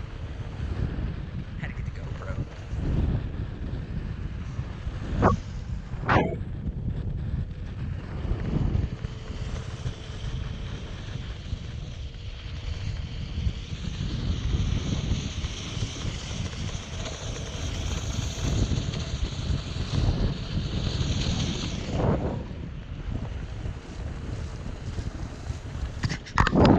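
Wind buffeting the microphone, a steady low rumble, with two sharp knocks about five and six seconds in.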